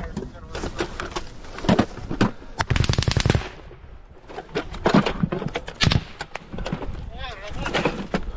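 Small-arms gunfire in a trench firefight: scattered single rifle shots and, about three seconds in, a rapid burst of automatic fire lasting under a second.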